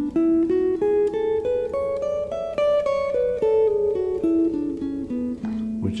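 Electric guitar, a Telecaster-style solidbody, playing the A major scale one note at a time: climbing for about the first half, then coming back down, stopping just before the end.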